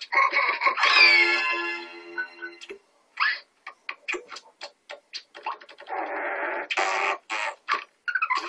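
Cartoon score with sliding notes for the first few seconds, then a run of short, sharp clicks and taps with two brief noisy bursts near the end.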